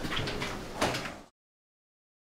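Room noise with a sharp knock or bang a little under a second in, then the sound cuts off abruptly to dead silence.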